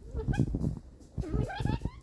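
An animal's whining calls, twice: a short one near the start and a longer one about a second in that rises steadily in pitch.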